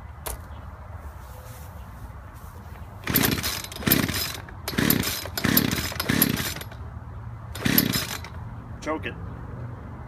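Two-stroke gas chainsaw being pull-started: about six quick pulls on the recoil starter, each a short loud rasp, without the engine catching, a saw they suspect is flooded.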